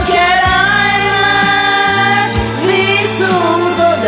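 A woman singing an Italian pop ballad over an instrumental backing track, drawing out long held notes that bend between pitches.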